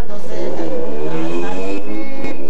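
A bullerengue cantadora singing unaccompanied, holding one long note that wavers and bends slightly upward.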